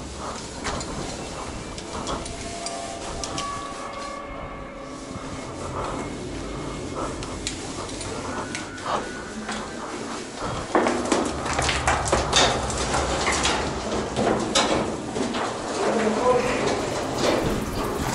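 Scraping, rustling and knocking of rope, gear, boots and clothing against rock during an abseil down a narrow shaft. The scrapes and knocks come thicker and louder in the second half.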